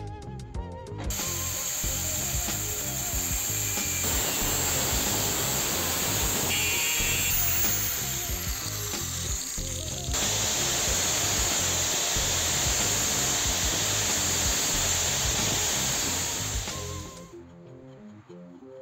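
Angle grinder grinding a steel hex nut clamped in a bench vise, a steady grinding noise that starts about a second in, dips briefly about ten seconds in, and stops shortly before the end.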